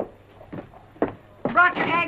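A sharp knock, then two lighter knocks about half a second apart, followed by a woman's voice calling out in the second half.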